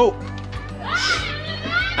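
Background music with a child's high-pitched voice calling out, once in a rising and falling call about half a second in and again briefly near the end.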